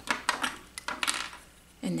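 A few light clicks and a short rustle from handling a roll of glue dots and a small pick tool.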